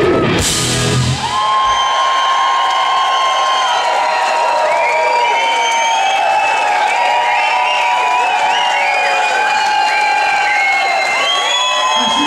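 A live blues-rock band ends a song with a final cymbal crash, then the bass and drums stop. The crowd cheers, whoops and whistles.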